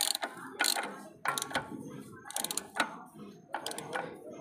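Socket ratchet wrench clicking as it turns a nut on a motorcycle's rear wheel assembly, in a series of short bursts, one for each back-stroke of the handle.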